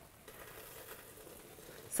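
Hot butter-and-brown-sugar caramel syrup pouring from a saucepan into a stainless steel mixing bowl, a faint, even soft patter.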